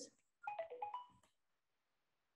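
A short electronic notification chime: a quick run of about six beeping notes stepping up and down in pitch, over in under a second.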